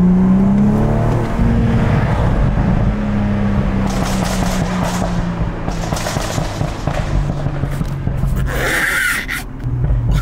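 Car engine and exhaust heard from inside the cabin while driving, loud, with the engine note rising in the first second or so and then holding steady. The driver says the car has suddenly become loud for no reason he knows, and calls it "really antisocial".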